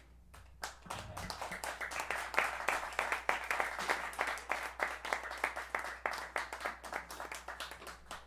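A small audience clapping: scattered claps that quickly build into steady applause and thin out near the end.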